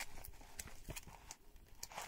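Faint handling of a photo album: plastic photo sleeves rustling, with a few light clicks as a page is turned.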